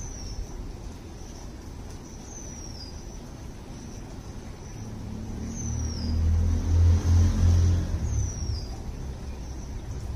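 A low motor rumble with a steady hum swells to its loudest about seven seconds in, then eases off, like a vehicle going by. A short, high chirp that falls in pitch repeats about every three seconds throughout.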